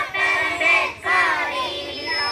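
Group of children singing together, the sung line pausing briefly about a second in before carrying on.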